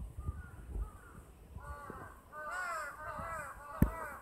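Crows cawing: a few faint calls at first, then a quick run of harsh caws from about halfway through, with a single sharp knock near the end.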